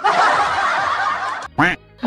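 An edited-in noisy sound effect over a colour-bar test card, fading out over about a second and a half, followed by a short chuckle.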